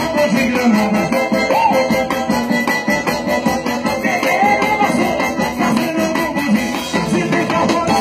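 Live forró band playing an instrumental passage: accordion melody over zabumba drum and drum kit keeping a steady beat.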